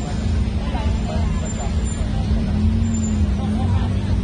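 Street ambience dominated by the steady low rumble of road traffic, with an engine hum swelling in the second half, and scattered voices of passers-by mixed in.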